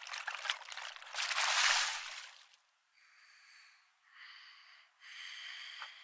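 The anime episode's soundtrack played back thin and quiet, with all the low end cut away. A rushing noise swells and then cuts off abruptly about two and a half seconds in, followed by faint, high steady tones in short patches.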